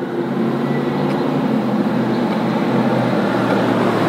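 A motor vehicle driving past on the street: a steady engine and road noise that holds at about the level of the speech around it.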